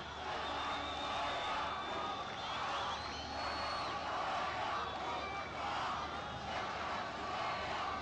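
Football stadium crowd noise: a steady din of many voices from the stands.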